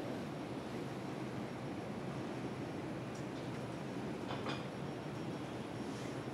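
Steady low hum and hiss of room noise, with a few faint brief sounds about three and four and a half seconds in.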